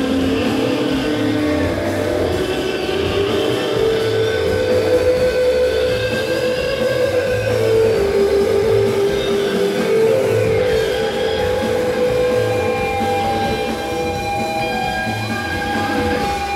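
Psychedelic rock band playing live, loud: electric guitar over drums, with long held notes, high tones that glide up and down, and a pulsing low end.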